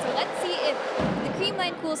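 Speech: a woman reporting over arena crowd noise, with music in the background.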